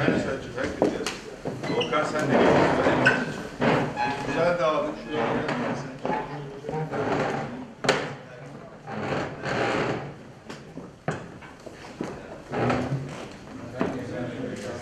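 Indistinct chatter of several people talking at once in a large hall, with a few sharp clicks among it.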